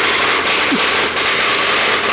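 Loud, dense, rapid crackle of simulated gunfire during a building assault. It runs without a break except for brief dips near the start and about a second in, and stops just after the end.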